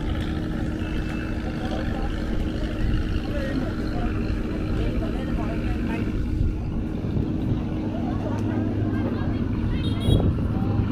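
A boat engine running steadily with a constant low hum, with people talking faintly in the background.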